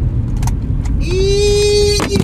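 Car cabin road rumble with a couple of knocks, then a car horn sounding one steady blast for about a second near the end during a hard stop.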